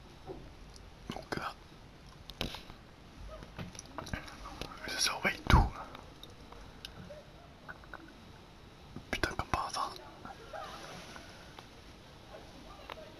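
Soft whispering close to the microphone in a small room, among scattered small clicks and knocks. There is a sharp thump about five and a half seconds in and a burst of clicks around nine to ten seconds.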